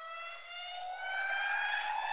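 An electronic riser sound effect: one pitched tone over a hiss, gliding slowly upward in pitch and growing louder.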